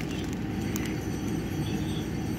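A low, steady background hum, with a faint crinkle or two from a plastic-wrapped meat package being handled.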